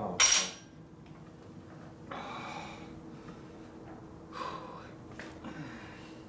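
A metal hand tool clanking against a steel workbench tray, one short, sharp, ringing clatter, followed by quieter handling noises and breaths.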